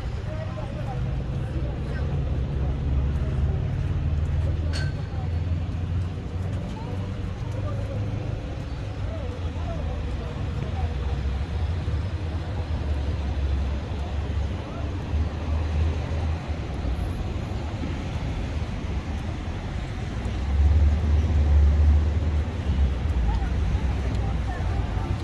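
Road traffic alongside a city sidewalk: a steady rumble of passing cars, swelling louder for a couple of seconds near the end.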